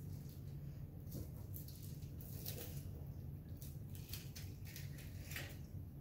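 Faint rustling and soft crinkles of a plastic sheet as raw bacon strips are lifted and laid into a weave, over a steady low hum.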